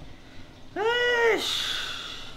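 A single drawn-out, high-pitched vocal sound from a person's voice, rising then falling in pitch, lasting under a second, followed by a short breathy hiss.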